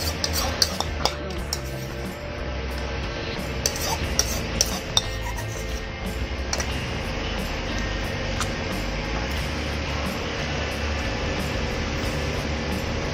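Spoon scraping and clinking against a ceramic bowl while the last of the noodles are scooped out, with scattered sharp clicks mostly in the first five seconds.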